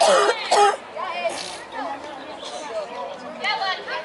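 Voices shouting and chattering: two loud shouts in the first second, then quieter overlapping talk.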